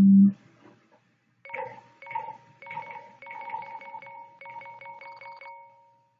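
A bass guitar note cuts off just after the start. Then a run of short, bright chiming pulses from the Yousician app plays, its results-screen sound effects, with the pulses coming faster toward the end.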